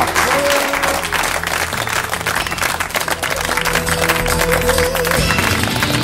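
Studio audience applauding over closing theme music. The clapping thins out near the end while the music carries on.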